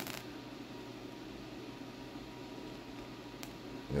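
Faint, steady hiss of the plasma flame burning at the breakout point of a 4.5 MHz solid-state Tesla coil, with a brief crackle dying away just after the start and a single click about three and a half seconds in.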